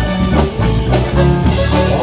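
Live norteño band playing an instrumental passage: button accordion over electric bass and a drum kit keeping a steady beat.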